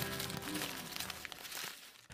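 Acoustic music fading out in the first half second, under a paper crumpling and tearing sound effect: a dense, irregular crackle that dies away to near silence just before the end.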